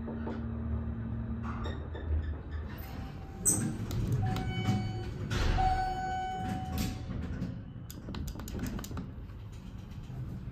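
ThyssenKrupp hydraulic elevator arriving at a floor: the pump motor's steady hum stops a couple of seconds in as the car levels, then the car doors slide open. Steady electronic tones sound for a few seconds, followed by a run of clicks as the doors are closed again.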